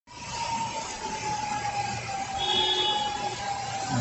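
Steady rush of rain and flowing floodwater, with a faint steady hum that slides slightly lower and a brief higher tone about two and a half seconds in.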